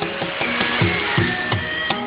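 Javanese gamelan accompaniment for a wayang kulit playing instrumentally: repeated drum strokes with a falling pitch over ringing metallophone notes.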